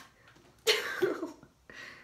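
A girl's short cough about halfway through, with a voiced tail, then a softer breathy exhale near the end.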